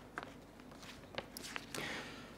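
Faint scattered clicks and small mouth noises close to a microphone, then a short breath in near the end.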